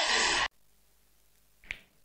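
A man's loud spoken word cuts off abruptly about half a second in, followed by near silence and one short, sharp click about a second later.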